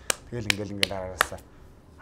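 A man talking, with four short, sharp clicks among his words.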